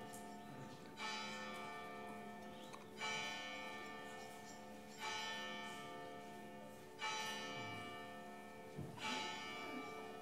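A large church bell strikes at a slow, even pace, once every two seconds, five times. Each stroke rings out and fades before the next; by the time on the clock this is the hour being struck.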